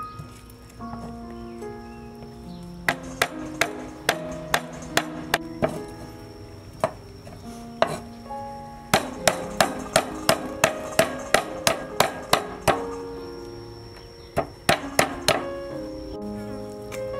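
Large kitchen knife chopping snake meat on a wooden cutting board: scattered sharp strikes, then a rapid, even run of about three strikes a second in the second half, and a few more near the end. Background music with held melodic notes plays underneath.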